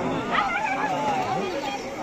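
Several people talking over one another, with a short high-pitched whining glide about half a second in.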